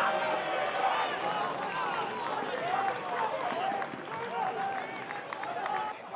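Match sound at a football ground: several voices shouting and calling over one another from the pitch and stands.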